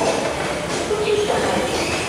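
Passenger train coaches rolling past on the rails, a steady running rumble of wheels on track.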